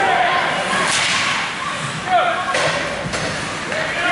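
Ice hockey play on a rink: a few sharp cracks of sticks and puck against the ice and boards over the scrape of skates, with shouting voices.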